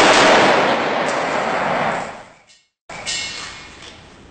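AK-47 rifle fire into a bullet-resistant window, echoing in a concrete-block room. It sounds loud and continuous for about two seconds, then fades. After a brief gap, a second shorter blast comes about three seconds in and dies away. The glass is not penetrated.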